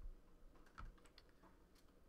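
Near silence with a few faint clicks and taps of trading cards being handled and set down on a stack.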